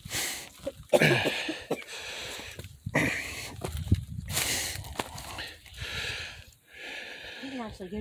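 Hard breathing close to the microphone, in repeated hissy breaths with short gaps, mixed with footsteps crunching over dry leaves and loose rocks.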